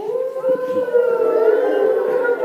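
A group of young children making a long, slightly wavering 'hoooo-woooo' howl together, imitating the wind of a snowstorm.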